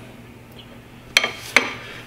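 Two sharp metallic clinks about half a second apart, the first ringing briefly, as aluminium rod posts are handled against their clear acrylic base.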